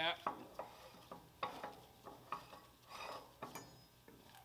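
Metal top cap of a BS-style wellhead stuffing box being unscrewed by hand on the polish rod: scattered light metal clicks and scrapes from the threads and loose parts, with one ringing clink about three and a half seconds in.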